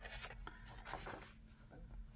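A page of a book being turned by hand: paper sliding and rustling softly, with a light tick about a quarter second in.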